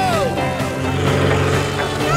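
Film trailer soundtrack: music with a falling pitch glide right at the start, then a steady low engine-like drone underneath, the sound effect of Snoopy's doghouse flying like a propeller plane.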